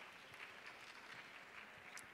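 Faint scattered applause from an audience.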